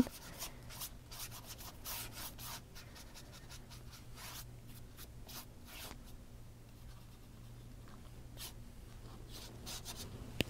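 Paintbrush stroking a wet wash of colour across sketchbook paper: faint, scratchy brushing strokes, frequent for the first six seconds and sparse after that, over a faint steady low hum.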